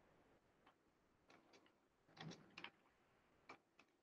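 Faint computer keyboard clicks: a few scattered key presses, with a short cluster a little past the middle, as letters are deleted and retyped.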